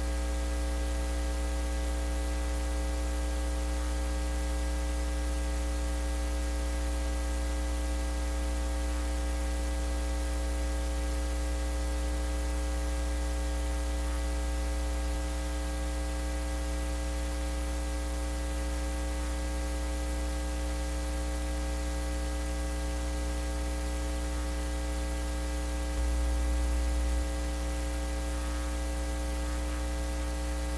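Steady electrical mains hum with a ladder of higher buzzing overtones and a hiss underneath; it briefly steps louder about four seconds before the end.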